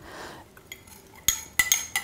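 A metal spoon stirring and scraping black treacle and milk in a glass jug, working the thick treacle off the bottom, with a few sharp clinks of the spoon against the glass in the second half.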